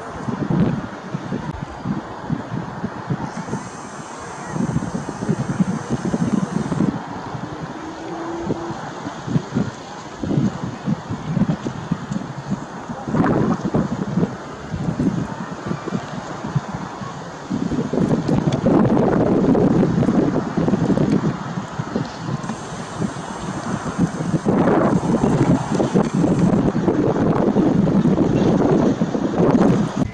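Gusty wind buffeting the microphone, a rough rumble with no clear tone that comes and goes in gusts. It grows louder and steadier for the last dozen seconds.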